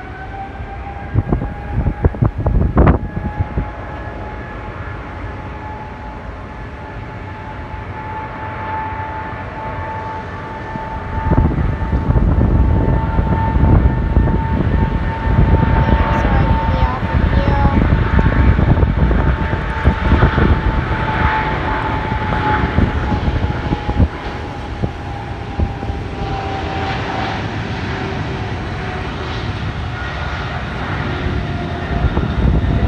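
Boeing 777 twin-engine jet airliner spooling up for takeoff: a high engine whine rises at the start and then holds steady, and about eleven seconds in a deep roar sets in as the takeoff roll builds. A few sharp thumps hit the microphone about one to three seconds in.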